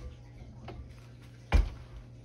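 A few light clicks and taps, then one loud, heavy clunk about one and a half seconds in, from a KitchenAid stand mixer and its glass bowl being handled on a kitchen counter.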